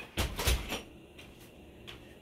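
A short clatter of a few knocks and a rub, about half a second long, shortly after the start, followed by faint room tone.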